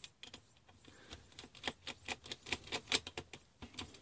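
Small screwdriver undoing the retaining screws of a laptop's cooling fan: a run of faint, light, irregular clicks.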